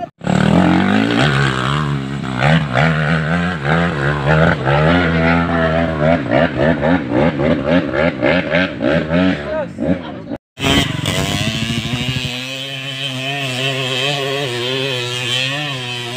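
Underbone motorcycle's small single-cylinder engine revving hard under load on a steep dirt hill climb, its pitch wavering up and down. The sound cuts out abruptly right at the start and again about ten and a half seconds in.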